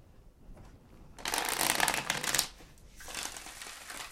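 A deck of tarot cards being shuffled, the two halves riffled together: a quick fluttering run of card flicks starting about a second in and lasting about a second, then a softer second run near the end.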